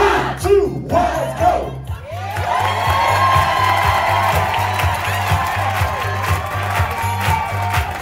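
Swing jazz music with a steady, rhythmic bass line; about two seconds in, a large crowd bursts into loud cheering and shouting over it, which carries on.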